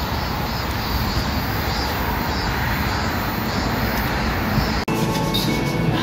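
Steady, loud rushing noise of outdoor street ambience. It breaks off abruptly about five seconds in and gives way to a different background with a few steady tones.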